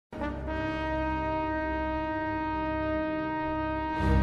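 Background music: one long note, rich in overtones, with a low bass beneath it. It starts suddenly and is held steady, then gives way to a fuller chord at the very end.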